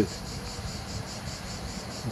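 Insects chirring in a rapid, even pulsing rhythm, several pulses a second, high in pitch.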